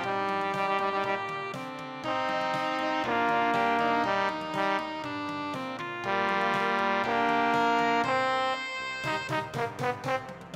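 Trombone playing a melody line in time with music: a long note, a quick run of repeated short accented notes, then long accented notes that swell, and a burst of short detached notes near the end.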